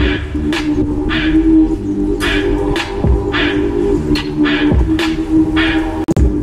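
Electronic music: a sustained synth chord under sharp drum hits about twice a second, with occasional deep kick-like thumps.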